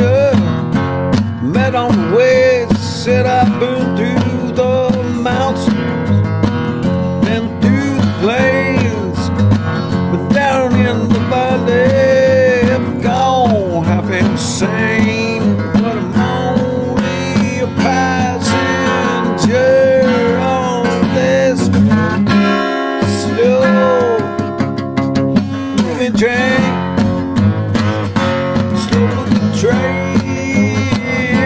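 Music: acoustic guitar playing, with a lead melody line that bends and slides in pitch over the accompaniment. The low accompaniment drops out briefly a little past the middle.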